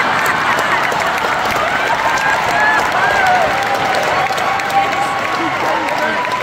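Audience laughing and applauding, with a few voices rising above the steady clapping.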